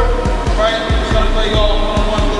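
Several basketballs being dribbled on a gym floor: overlapping, irregular thumps, about five a second.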